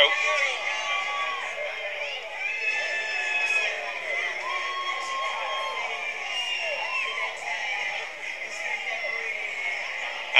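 Crowd of many voices shouting and calling out together, with several long drawn-out calls rising above the mass.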